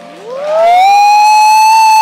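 A long, very loud whooping cheer from someone close to the recording device. It rises in pitch, holds one high pitch, then drops off sharply as applause begins.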